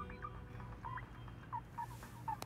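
Faint birdsong: a string of short, quick chirps that rise and fall in pitch. The tail of soft music dies away at the start.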